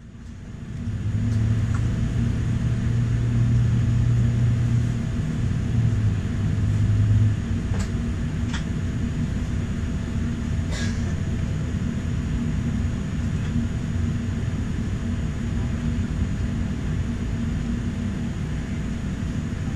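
Steady low rumble and hum of a Boeing 787-9's cabin, heard from a window seat while the airliner stands on the apron. A deeper drone drops away about seven seconds in, and a few light clicks sound a few seconds later.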